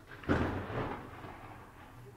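A clap of thunder: a sudden crack about a quarter of a second in, dying away into a fading rumble.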